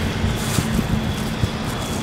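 Steady outdoor background noise with a low, continuous hum underneath and a few faint ticks.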